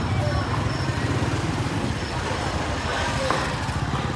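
Motor scooter engine running close by with a steady low, rapidly pulsing throb, under scattered voices of market chatter.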